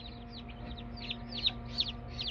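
Newly hatched Buff Orpington chicks peeping together in their shipping box: a steady stream of short, high cheeps, each falling in pitch, several a second.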